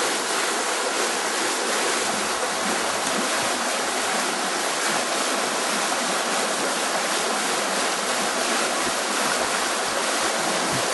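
Stream water rushing steadily, an even, unbroken noise.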